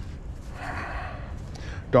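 A man's long breath close to the microphone, a soft airy rush lasting about a second and a half, over a low rumble of wind on the microphone.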